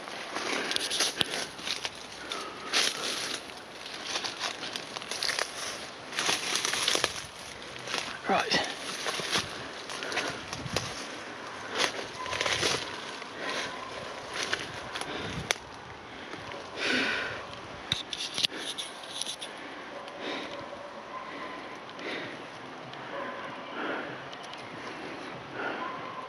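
Irregular footsteps and rustling as someone pushes on foot through forest undergrowth, leaf litter crackling and branches brushing past.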